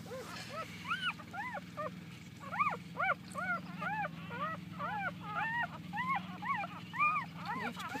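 Dog whimpering: a steady run of short, high whines, each rising and falling in pitch, about two or three a second.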